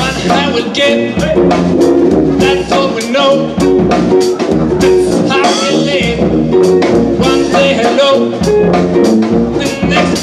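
Live jazz band playing, a drum kit keeping a steady beat under the instruments, with a male voice singing.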